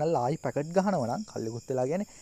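A person speaking continuously, narration in Sinhala, with a faint steady high-pitched whine underneath.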